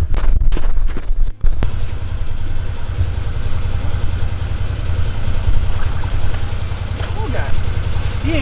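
Side-by-side utility vehicle's engine idling close by: a steady low rumble.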